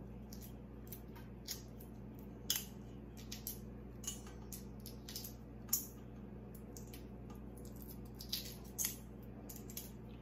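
Shell of a hard-boiled egg crackling and peeling off under the fingers: a scatter of small, sharp clicks and ticks, with a steady low hum beneath.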